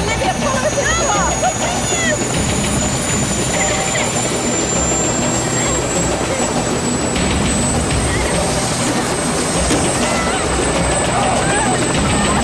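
An engine droning steadily and loudly throughout, with a constant low hum.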